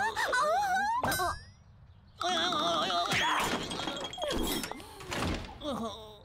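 Cartoon soundtrack: characters' wordless voices, a pause, then a sudden thunk about two seconds in, followed by more voices and sound effects.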